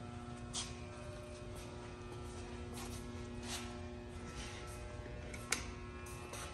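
Steady electrical hum of an energized PDI WaveStar power distribution unit's 480-to-208/120 V three-phase transformer. A few faint clicks and handling rustles, with a sharper click about five and a half seconds in.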